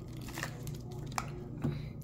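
Quiet room tone with a steady low hum and two faint short clicks, one about a second in and one shortly after.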